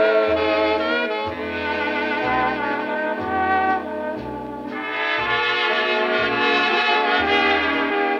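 A 1946 dance-orchestra recording played from a 16-inch transcription disc on a turntable: the brass section of trumpets and trombones carries the tune over string bass, dipping softer for a moment about halfway through.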